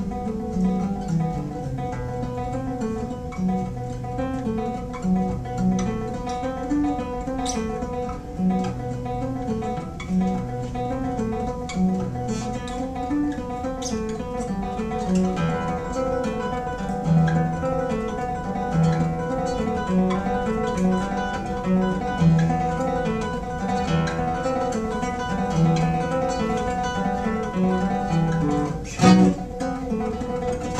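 Nylon-string classical guitar played solo in a fingerpicked étude: a moving bass line under repeated, ringing high notes, with a loud strummed chord near the end.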